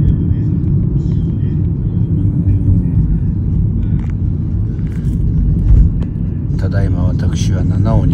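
Car on the move, a steady low road and engine rumble heard from inside the vehicle.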